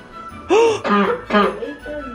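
Three short, high-pitched wordless vocal bursts from a child, each arching up and down in pitch, over steady background music.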